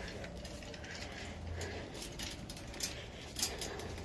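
Wire shopping cart rattling and clicking as it is pushed along, with a run of sharper clicks in the second half.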